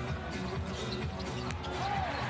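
Arena music with a steady bass line over live basketball play: sneakers squeaking on the hardwood court, with a squeak near the end, and the ball bouncing.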